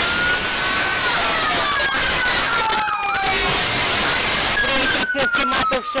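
Police car sirens wailing, several overlapping tones slowly rising and falling, under a loud steady rush of noise. About five seconds in the rush drops away into a few short clicks while one siren tone keeps falling.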